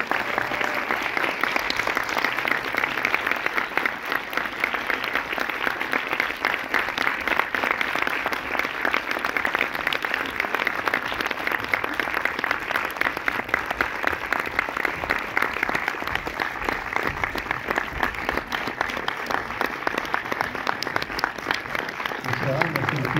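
A cinema audience applauding steadily, a dense sustained clapping from many hands, welcoming guests onto the stage.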